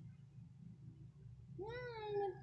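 A baby's drawn-out vocal sound starts about one and a half seconds in, rising and then falling in pitch. Before it there is only a faint low hum.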